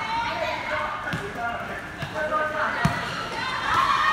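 A futsal ball thudding on the hard court as it is kicked and bounces: three thuds about a second apart, the last the loudest, over players' and onlookers' voices echoing in the covered hall.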